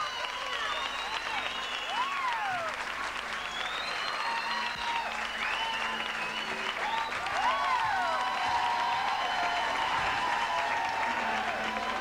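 Audience applauding and cheering, with many high shrieks and whoops gliding up and down over the clapping.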